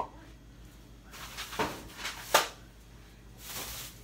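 Groceries being handled and put away: a few sharp knocks of items or a refrigerator shelf being set down, the loudest about two and a half seconds in, with plastic grocery bag rustling near the end.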